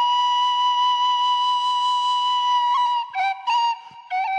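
Serbian frula (shepherd's flute) played solo: one long held note for about three seconds, then a few short ornamented notes with brief breaks near the end.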